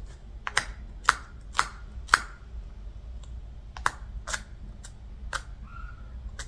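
A series of short, sharp clicks or taps over quiet room noise: four evenly spaced at about two a second, then a handful more at uneven intervals.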